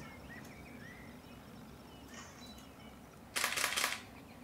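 A few faint bird chirps, then near the end a loud half-second rattle of rapid clicks: a camera shutter firing in a fast burst.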